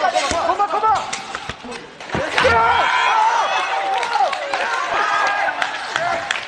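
Several people shouting and shrieking excitedly, with a few sharp thuds among the voices.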